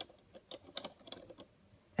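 A few faint, irregular clicks and taps of hard plastic as toy figures are handled and fitted onto the horses of a toy carousel.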